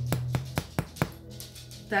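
Ceramic spoon tapping the bottom crust of a freshly baked French boule, about five quick taps in the first second, giving a hollow sound. The hollow sound is the sign of a light, fluffy crumb inside.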